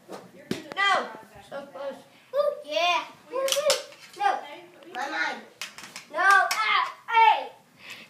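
Children's voices, high-pitched and excited, calling out in bursts that the transcript did not catch as words, with a few short knocks among them.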